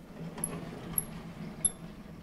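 Vertical sliding chalkboard panels being pushed along their tracks: a steady rumbling slide with three sharp clicks about half a second apart.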